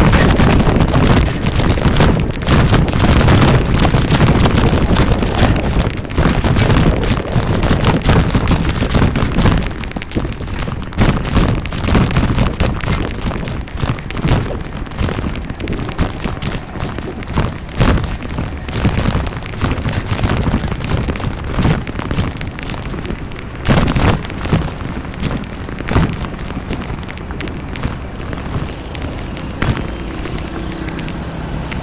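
Wind buffeting the microphone of a moving phone, a loud rumble with crackling gusts. It is heaviest for the first ten seconds, then eases into uneven gusts and sharp knocks.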